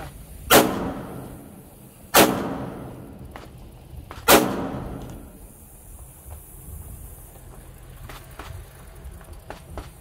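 Three handgun shots fired one at a time, about two seconds apart, each followed by an echo that dies away over about a second. A few faint clicks come near the end.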